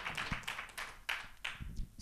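Scattered audience applause dying away, with a few dull thumps near the end as a handheld microphone is picked up.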